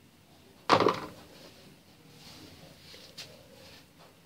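A plastic spatula is dropped into a plastic mixing bowl: one sharp clatter about a second in. Soft rustling follows as hands press and gather crumbly bread dough on the table, with a light tap near the end.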